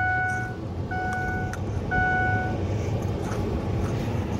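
An electronic beeper sounding one steady mid-pitched tone three times, about once a second, over the continuous low rumble of a vehicle.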